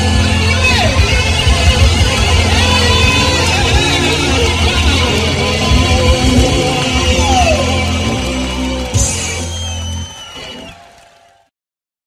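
Live blues-rock band playing a boogie with electric guitars, bass and drums, the guitars sliding in pitch. About nine seconds in comes a sharp final accent, the bass and drums stop about a second later, and the last ringing guitar fades out to silence.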